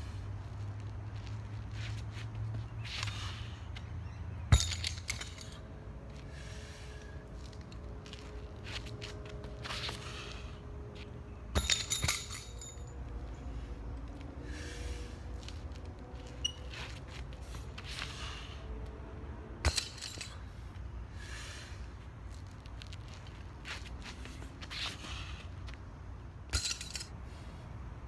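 A handful of short, sharp metallic clinks and knocks spread out over a steady low rumble, with a double clink about twelve seconds in. They come from a 42 lb weight-for-distance weight and its metal handle being handled.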